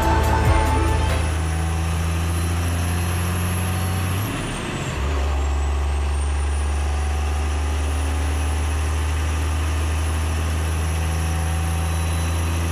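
Heavy diesel truck engine idling steadily, with a low hum, a brief dip and break about four seconds in, then settling back to the same steady idle.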